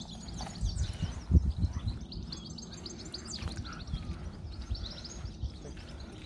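Small birds chirping and singing in quick short notes, with a few low rumbles about a second in.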